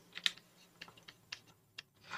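About eight faint, irregular light clicks and taps of a stylus on a drawing tablet as a word is handwritten.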